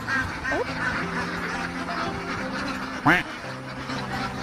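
A large flock of domestic ducks quacking, many overlapping calls, with one louder rising call about three seconds in. Background music plays under it.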